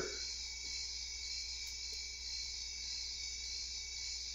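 Miniature PKE meter toy running, its tiny speaker giving a steady high-pitched electronic buzz, with a faint low hum beneath.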